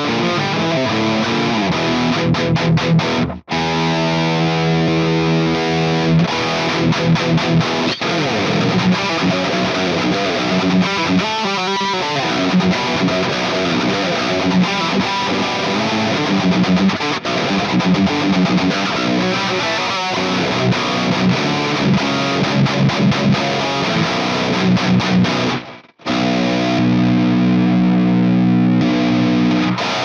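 Heavily distorted eight-string electric guitar playing heavy, rhythmic metal riffs. The riffs cut off dead twice, about three seconds in and again near the end, and a held chord rings on just before the end.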